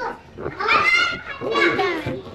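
A child's high voice calling out twice, each call about half a second long.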